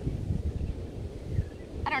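Wind buffeting a phone microphone, a gusty low rumble, with a woman's voice starting near the end.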